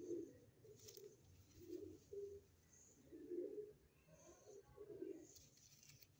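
Domestic pigeon cooing faintly, a string of short low coos about once a second.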